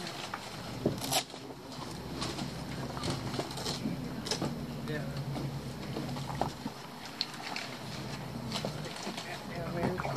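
Indistinct, low-level talking, too faint to make out, over a steady background hiss, with a few sharp knocks; the loudest knock comes about a second in.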